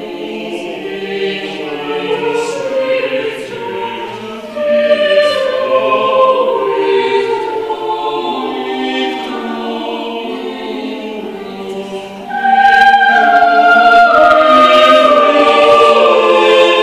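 Mixed chamber choir of men's and women's voices singing sustained lines, with a louder entry about four and a half seconds in that swells to full voice about twelve seconds in.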